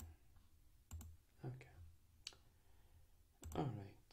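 Computer mouse clicking: about four single clicks spaced roughly a second apart, with a voice starting just before the end.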